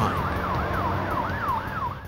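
Police car siren in a fast yelp, its pitch sweeping up and down about three times a second over the rumble of cars on the road. It stops near the end.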